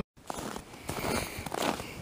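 Faint footsteps in snow with light rustling, irregular and scattered.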